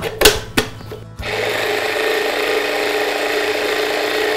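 A few sharp clinks of kitchen utensils, then about a second in a small electric kitchen appliance motor starts and runs steadily with an even hum under a hiss.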